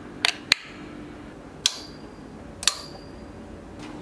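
About five sharp metallic clicks spread over three seconds; the last two each ring briefly with a high metallic tone.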